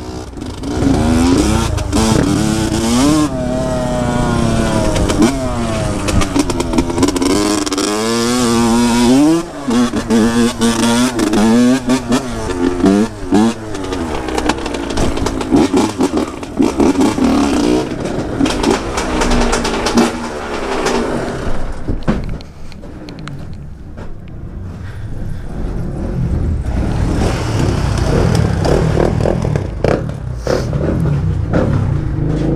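Dirt bike engine revving up and down as it is ridden, with the pitch rising and falling again and again. It settles quieter about two-thirds of the way through and picks up again near the end.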